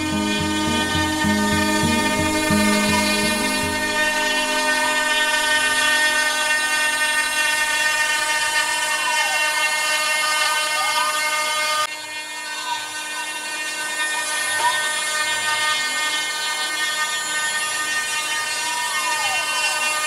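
CNC router cutting fibreboard: a steady high spindle whine with many overtones, while the stepper motors' tones repeatedly rise and fall in pitch as the machine traces circles. Low music fades out over the first few seconds, and the level dips briefly at a cut about halfway through.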